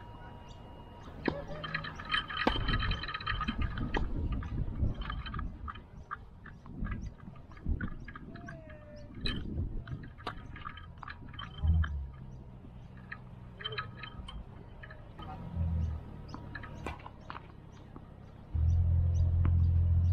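Doubles tennis rally: a series of sharp racket-on-ball strikes and ball bounces on a synthetic-grass court. A low rumble starts suddenly about a second and a half before the end.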